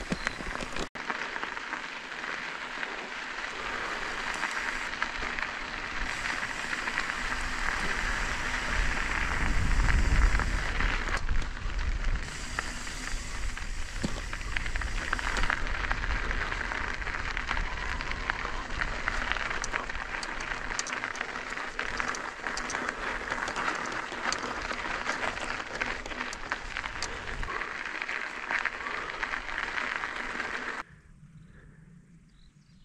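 Mountain bike tyres rolling and crackling over a dirt trail of loose, 'kitty litter' gravel, a continuous gritty crunch full of small ticks. About ten seconds in a louder low rumble rises and fades.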